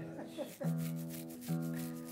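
Acoustic guitar played softly: notes plucked about half a second in and again about a second later, each left ringing.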